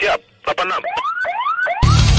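A brief gap, then a siren-like electronic whoop rising in pitch over and over, about four times a second, in the edit's backing music. Near the end it gives way to a loud music track with a heavy bass beat.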